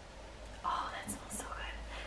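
A person sniffing at a small bottle held to the nose: one short, breathy inhale just over half a second in, followed by faint quiet murmurs.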